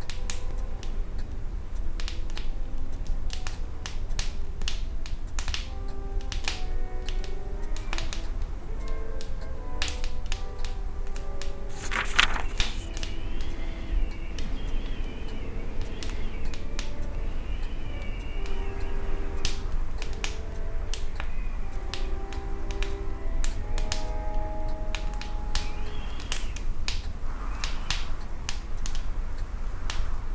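A wood fire crackling and popping in a wood-burning stove, with quiet music playing under it and a steady low rumble. A wavering high whistling tone comes in around the middle and again near the end.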